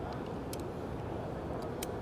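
Steady low background hum of a busy exhibition hall, with two or three light clicks as an Allen wrench tightens the set screw inside a rifle's polymer buttstock.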